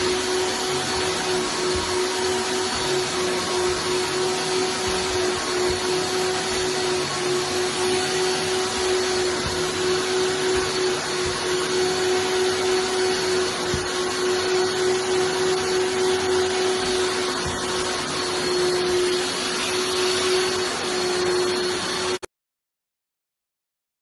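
Vacuum cleaner running steadily with a steady hum, its hose and flat upholstery nozzle working over sofa fabric.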